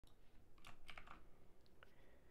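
Faint clicks of a computer keyboard: a short run of taps under a second in and one more near the end, over quiet room tone.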